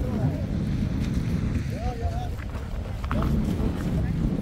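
Wind rumbling on the microphone, with faint voices in the background.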